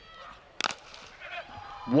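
Cricket bat striking the delivered ball once: a single sharp knock a little over half a second in, as the batsman drives it.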